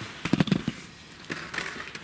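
A quick run of sharp clicks and light rattles as a shell is pulled out of the swung-out metal cylinder of a Well G293A CO2 airsoft revolver, loudest about half a second in, with a few lighter clicks after.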